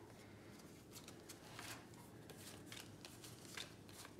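Faint, scattered soft clicks and rustles of cardboard trading cards being flipped through and slid apart by hand.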